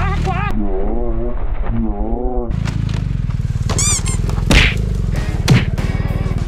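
BMW GS adventure motorcycle's engine running under load on a steep rocky climb, with a voice crying out over it. The bike then drops onto its side, with two sharp knocks in the last second and a half.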